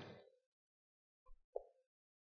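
Near silence, with one faint short pop about one and a half seconds in.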